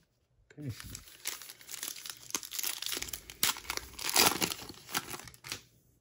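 Plastic wrapper of a Panini Classics football card pack being torn open and crinkled by hand: a few seconds of dense crackling and tearing, loudest near the end.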